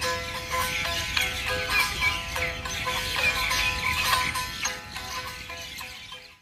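A Chitrali sitar, a long-necked lute, plucked in a quick run of notes over ringing drone strings. It gets quieter near the end.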